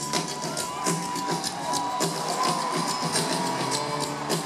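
Live rock band playing an instrumental stretch with no vocals, drums keeping time under a long held high note that bends slightly, heard from the audience through the arena sound system.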